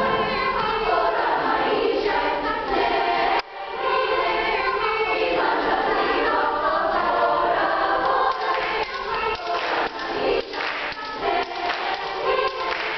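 A youth choir singing an upbeat song together. There is a brief break in the sound a little over three seconds in. Near the end the singing is joined by rhythmic hand claps.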